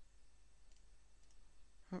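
Two faint computer mouse clicks over quiet room tone.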